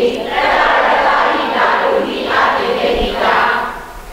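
A group of people reciting a text aloud together in unison, many voices blending into a dense chant. It comes in phrases with short breaks and tails off near the end.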